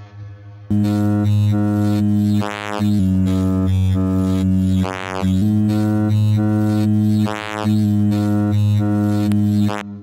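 Wavetable oscillator of an Expert Sleepers Disting mk4 eurorack module playing a sequence of sustained low, buzzy synth notes that change pitch every second or two. The tone brightens in swells about every two and a half seconds. It starts under a second in and drops out just before the end.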